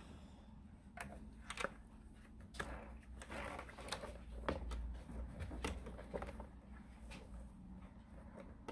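Faint rustling and irregular small clicks of a quilted, silicone-covered oven mitt being handled and shifted under a sewing machine's presser foot, over a faint steady hum.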